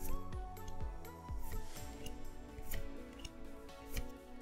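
Soft background music with a regular low beat, over the crisp slides and flicks of Pokémon trading cards being shuffled from the back of a small stack to the front, one at a time in the hand.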